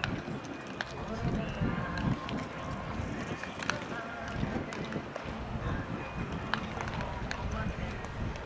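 Background chatter of spectators' voices, with sharp pops at irregular intervals, several in all, from baseballs smacking into leather gloves as players play catch.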